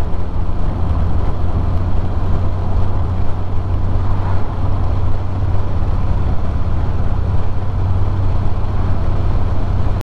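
Triumph TR6's straight-six engine running steadily at cruising speed, heard from inside the cockpit, with wind and road noise over it.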